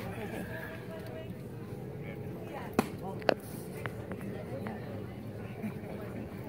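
A pitched baseball popping into the catcher's leather mitt: two sharp pops about half a second apart near the middle, over background chatter from spectators.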